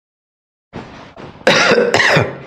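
A man coughing: a rough throat sound starts a little before halfway, then two loud, harsh coughs close together near the end.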